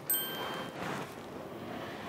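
A short bright chime: a high ding of several tones just after the start, fading within about half a second, then a faint hiss.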